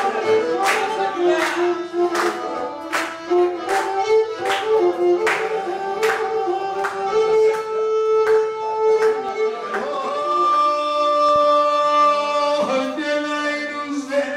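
Pontic lyra playing a lively dance tune, with hand claps on the beat about every two-thirds of a second. The clapping stops about ten seconds in, a long note is held, and a man's voice comes in near the end.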